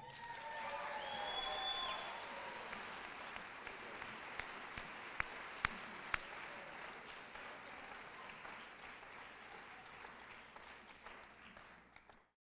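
Audience applauding at the end of a talk, with some cheering in the first couple of seconds. The applause swells, then slowly dies away, with a few single claps standing out near the middle.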